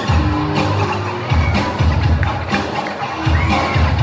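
90s dance music with a heavy, repeating bass beat played loud over PA speakers, with a crowd cheering.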